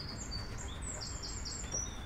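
A small bird singing in the background: a run of short, high-pitched chirping notes, a few repeated in quick succession, over a low steady background rumble.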